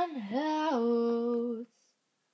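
A woman singing unaccompanied. She holds one long note that steps down in pitch about a third of the way in, then cuts off sharply near the end.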